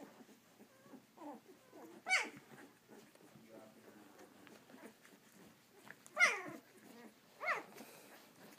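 Eleven-day-old Samoyed puppies whimpering: soft cries about a second in, then three loud high cries that fall in pitch, about two seconds in and twice near the end.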